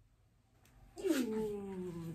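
A drawn-out vocal sound starting about halfway in: one long voiced tone that glides down in pitch and then holds steady.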